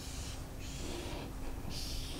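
Marker pen drawing lines on a whiteboard: a few separate scratchy strokes, the last and longest near the end, over a faint steady hum.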